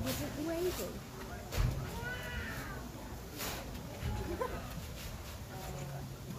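A voice calling out in drawn-out, wavering cries, with a few sharp thuds about one and a half to two seconds apart as a coconut is worked on a husking stake.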